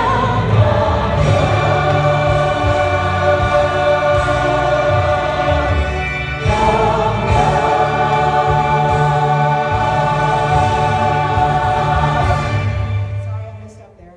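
A choir singing a gospel song in long held notes, with a brief break about six seconds in, ending on a sustained final chord that dies away just before the end.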